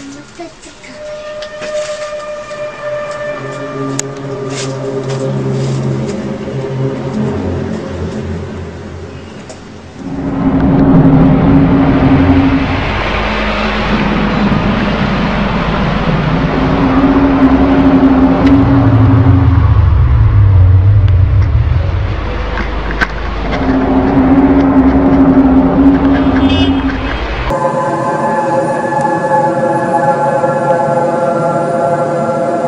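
Long, low, horn-like droning tones, each held for a few seconds: the unexplained "sky trumpet" sounds caught on amateur recordings. From about ten seconds in they sound over a loud, even rushing noise.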